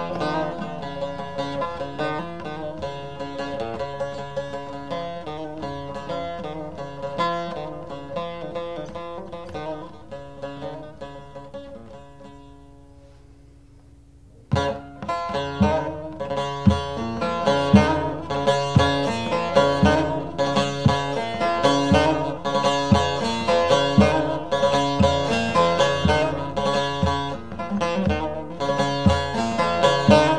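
Bağlama (Turkish long-necked saz) playing an instrumental folk passage that gradually thins and softens until only a low note hangs on. About halfway through, a louder, busier rhythmic passage starts abruptly with sharp plucked accents.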